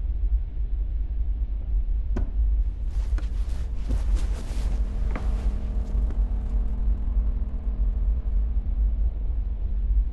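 A steady low rumbling drone, typical of a film's tense underscore, with a few faint clicks. A faint held tone joins it about halfway through.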